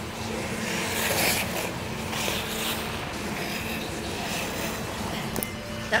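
Figure skate blades hissing and scraping on rink ice in two short bursts, over a steady arena hum. There is a clatter of the camera being handled near the end.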